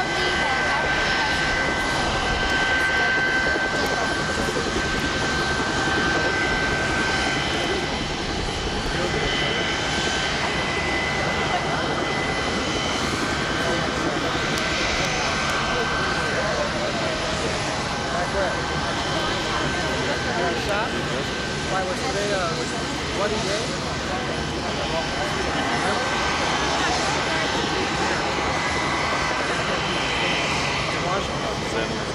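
Turbofan engines of an Air Force C-20 (Gulfstream III) business jet running as it taxis: a steady rush of jet noise with a high thin whine that comes and goes in strength. Faint voices sound now and then.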